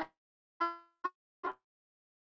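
A woman's voice making three short hesitation sounds: first a brief held hum, then two quick clipped syllables, with dead silence between them.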